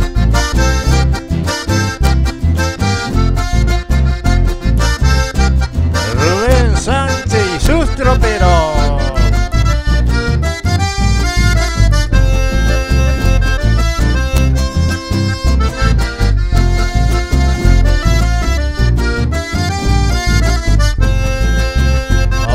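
Live Argentine folk music: a button accordion leads an instrumental zapateo passage over electric bass and acoustic guitar, with a steady, even beat.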